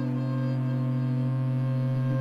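Home-built electric viola with magnetic pickups and an aluminium fingerboard, its strings sustained by an EBow: layered notes held in a steady drone, with hall reverb.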